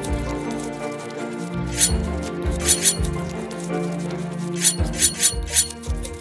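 Instrumental background music with short, high squeaky sound effects dubbed on for a hermit crab, in quick pairs and clusters around two, three and five seconds in.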